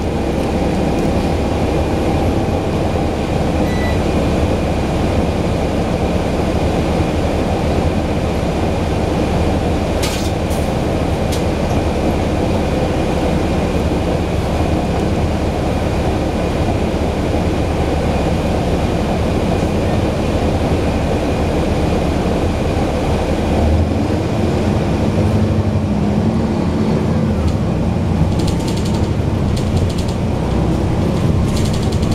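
A Cummins ISL straight-six diesel engine with its ZF Ecolife automatic transmission runs loudly and steadily under way, heard from the rear of the bus cabin near the engine. There are a couple of sharp clicks about ten seconds in, and the engine's note changes about twenty-four seconds in.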